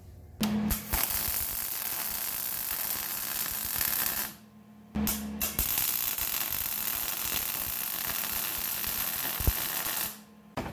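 Electric arc welder laying tack welds on a steel steering shaft where a pitman arm joins it. Two welding runs, the first about four seconds long and the second about five, with a short break between.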